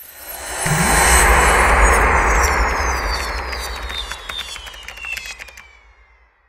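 Logo sting sound effect: a rushing swell with a deep rumble and whistling tones that slide steadily downward, like a jet passing. It builds over the first second and fades out near the end.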